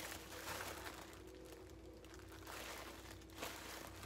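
Faint crinkling of tissue paper being unwrapped by hand, with a quieter stretch in the middle.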